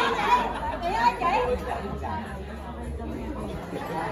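Overlapping chatter of several people talking at once in a large room. One voice is clearest in the first second or so, and the talk is quieter after that.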